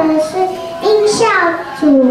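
Young children singing, their voices holding and sliding between notes.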